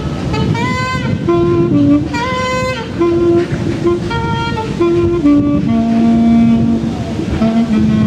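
Solo saxophone playing a slow melody of held notes, some of them bending in pitch.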